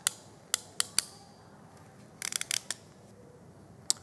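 Ratchet crimping tool clicking as its handles are squeezed shut to crimp an insulated ring lug onto a wire: a few single sharp clicks in the first second, a quick run of clicks a little after two seconds, and one more near the end.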